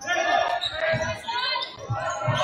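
A basketball dribbled on a hardwood gym floor, bouncing several times, with voices calling out in the echoing gym over it.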